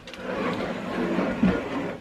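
Stiff, shiny petticoat fabric rustling continuously as it is pulled up and smoothed on a dress form, with a soft thump about one and a half seconds in.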